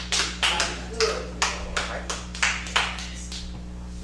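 Hand claps in a loose steady beat, about two a second, that die away about three seconds in, over a steady low hum.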